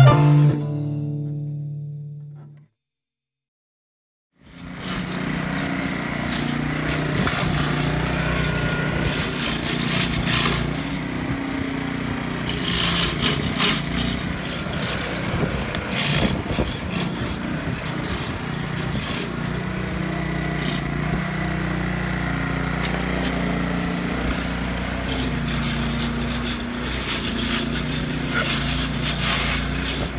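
Jazz music fades out, and after a short silence a walk-behind lawn mower's engine comes in and runs steadily for the rest of the time.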